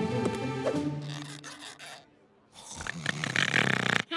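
A short music cue of held notes. After a brief pause, a man snores with a rough, rasping breath in the last second or so.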